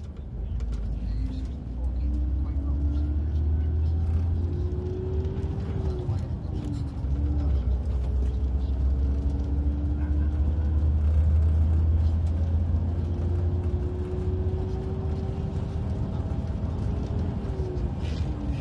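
Inside a moving coach: the low, steady rumble of engine and road, with the engine note slowly rising and falling a few times as the coach changes speed.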